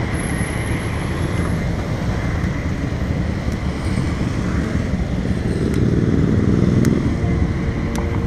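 Road traffic: cars and motorbikes driving past on a wide city street. The noise stays steady, then swells as one vehicle passes closer in the last few seconds.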